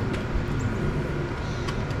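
Steady low rumble of outdoor background noise, with no clear strikes or tool sounds.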